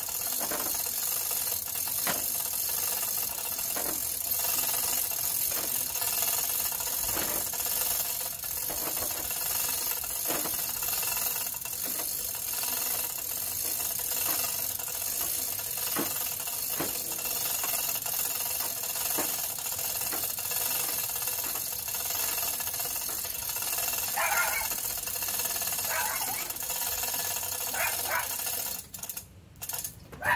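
Hand chain hoist being worked to lift the front of a lawn tractor: the hoist's pawl clicks and its chain rattles every second or two, over a steady background hum.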